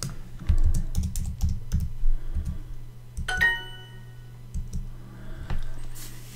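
Typing on a computer keyboard, a run of quick key clicks. About three seconds in, a short bright chime from the Duolingo app sounds, its signal that the typed answer was accepted.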